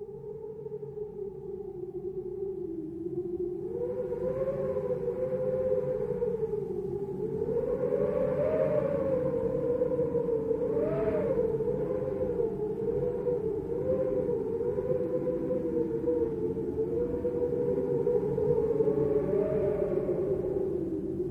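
French horns holding long, sustained tones that slowly waver and shift in pitch, fading in from silence over a low rumble.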